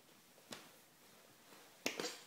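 A crawling baby's hands slapping a hardwood floor: two sharp taps, one about half a second in and a louder one near the end.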